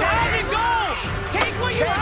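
Several people yelling excitedly, in two long rising-and-falling shouts, over background music.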